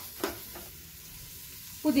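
Vegetables frying in oil in an aluminium pressure cooker: a steady sizzle, with a light knock about a quarter second in. A voice starts just before the end.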